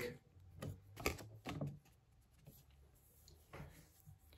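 Quiet room tone with a few faint, brief soft noises, three in the first two seconds and one more shortly before the end.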